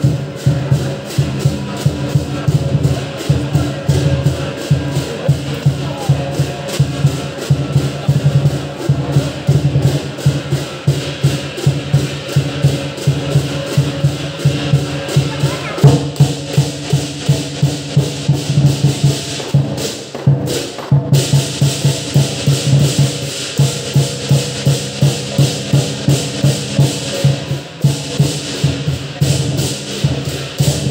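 Lion dance percussion: a drum beaten in a steady, fast, driving rhythm, with cymbals clashing over it. The cymbals drop out for a moment about twenty seconds in.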